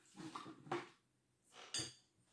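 Tableware being handled: a metal spoon on a plate, with a few soft knocks, then one sharp, ringing clink of the spoon against the plate near the end.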